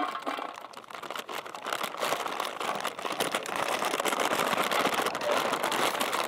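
Potato fries pouring out of a paper bag into a perforated metal fryer basket: a dense patter of small clattering hits mixed with the paper bag crinkling, growing louder after the first second or so.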